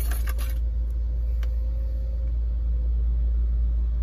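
Kia K900's straight-piped 5.0 V8 idling with a steady low rumble, heard from inside the cabin. A faint motor hum runs for the first two seconds or so as the sunroof shade slides open, with a single click about a second and a half in.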